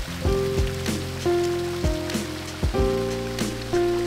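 Splashing of water falling from a tiered stone fountain into its basin, heard under background music with held notes and a regular bass beat.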